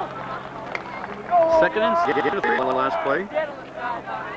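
Indistinct voices talking, with no clear words, over a steady low hum.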